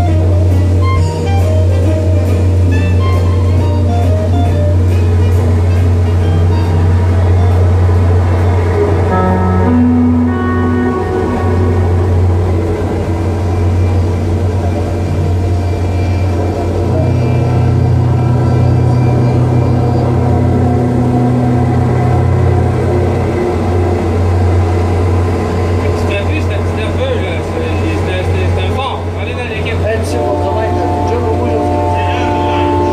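Soundtrack of an outdoor projection show: music with voices mixed in, over a loud, steady low drone.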